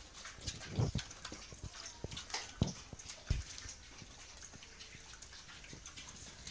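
Pigs feeding at a concrete trough of food scraps: irregular wet chewing and snuffling clicks, with a few short, low grunts in the first half.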